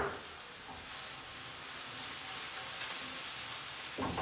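Green peppers frying in oil in a pan on the hob, a steady sizzle.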